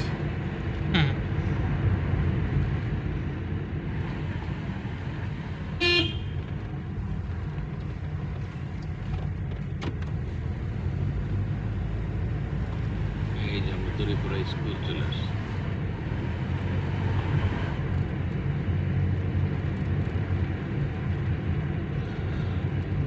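Car engine and road noise heard from inside the cabin while driving, a steady low rumble, with one short horn toot about six seconds in.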